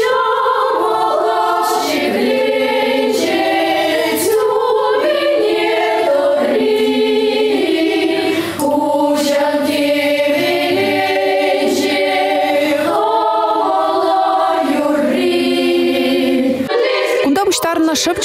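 Children's choir singing unaccompanied, several voices holding notes together in phrases. The singing breaks off near the end and a voice starts speaking.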